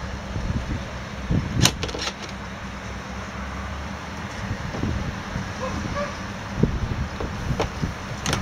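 A few light knocks and taps of hands on a scooter's plastic rear bodywork, the clearest about a second and a half in, over a steady low rumble.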